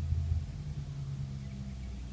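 A steady low background hum or rumble, louder for about the first half second and then easing off a little.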